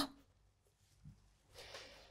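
Near silence: room tone, with a brief faint rustle near the end.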